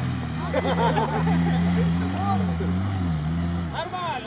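Off-road vehicle engine running steadily, its revs drifting gently up and down, with voices talking in the background.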